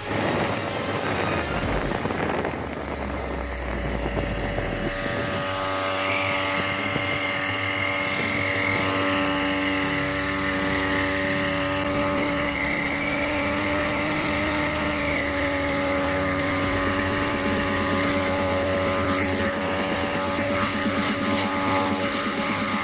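Knapsack power sprayer's small engine running steadily at constant speed while it sprays.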